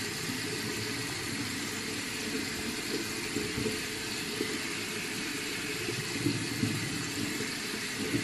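Water running steadily from a bathroom tap, with soft rubbing of a small terrycloth towel wiped over the face.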